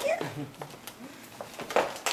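Short, high-pitched wordless vocal sounds from a baby or toddler, with a louder, sharper sound near the end.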